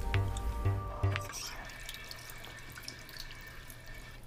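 Music with a pulsing bass beat cuts out about a second in. It gives way to water from an old tap into a sink: a light trickle with scattered drips.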